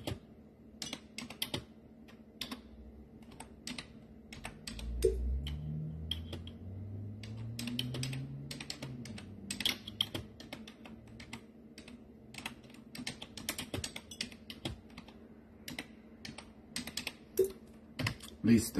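Keys being typed on a keyboard in quick, irregular clicks, with a low wavering hum for several seconds about a third of the way in.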